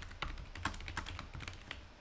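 Typing on a computer keyboard: an irregular run of quick keystrokes as a short sentence is entered.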